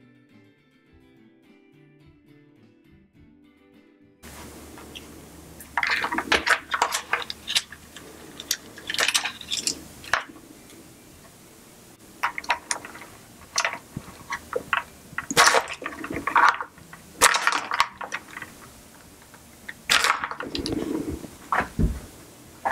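Irregular clusters of small plastic clicks, rattles and rustles as an ESC and its wiring are worked loose and pulled out of an RC car's plastic chassis. The first few seconds hold only faint background music.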